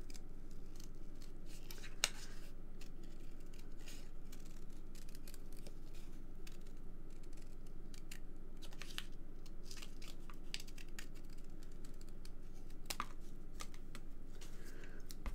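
Scissors cutting around a stamped paper image on card stock: a scattering of short snips and soft paper rustling, over a low steady hum.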